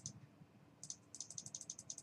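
Computer mouse button clicked rapidly, about eight to ten light clicks a second, starting just under a second in, as the console's scroll arrow is clicked repeatedly.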